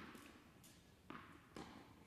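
A few faint, short taps: a tennis ball bouncing on an indoor hard court and struck with a racket in a backhand slice. The sharpest tap is at the very start, with two fainter ones about a second in and shortly after.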